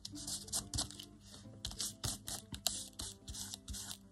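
Hands rubbing and pressing a glued paper picture onto a paper tag with a tissue: quiet, irregular rustles and scrapes of paper on paper.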